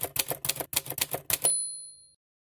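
Typewriter sound effect: a rapid run of keystroke clicks, then a single carriage-return bell ding about a second and a half in that rings out and fades.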